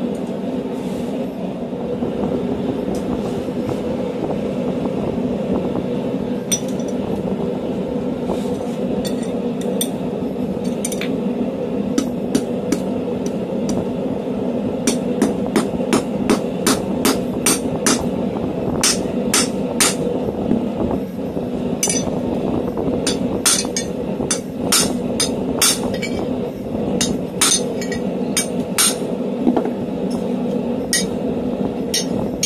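Hammer blows on red-hot steel tong jaws on an anvil: light, sharp metallic strikes, first sparse, then coming several a second in irregular runs over the second half. A steady hum runs underneath.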